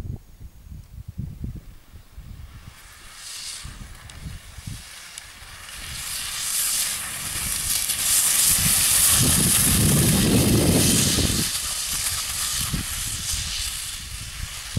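Grass skis running over dry grass: a high hiss that builds as the skier comes down the slope, is loudest as he passes close about eight to eleven seconds in, with a low rumble under it, then eases off. Low buffeting at the start, like wind on the microphone.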